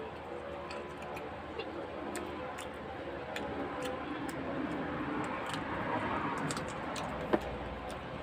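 A person chewing and smacking their lips while eating chicken feet and cassava, close to the microphone: a run of small, irregular mouth clicks over a steady background hum, with one sharper click near the end.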